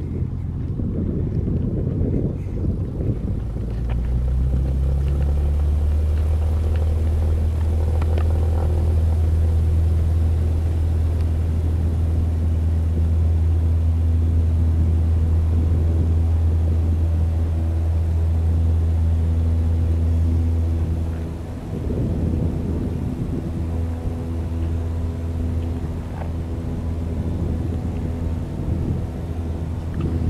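Piston engines of twin-engine propeller planes running with a steady low drone, which eases off about two-thirds of the way through while a quieter engine hum carries on. Wind gusts on the microphone now and then.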